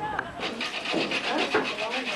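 A bread roll rubbed against a flat hand grater to make breadcrumbs: quick, regular rasping strokes that start about half a second in.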